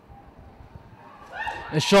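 Low stadium background, then about a second and a half in a man's voice rises into a loud, wavering excited exclamation. The exclamation comes from close to the commentary microphone.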